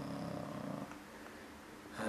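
A man's low, steady closed-mouth hum, a hesitation sound, held for about a second and then fading to faint room tone.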